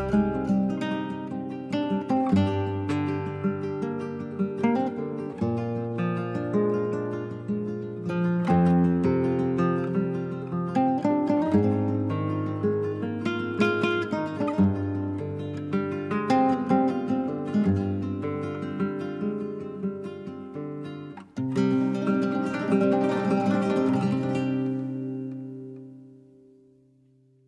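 Spanish-style acoustic guitar music, plucked and strummed, with a short break about 21 seconds in; the piece fades out near the end.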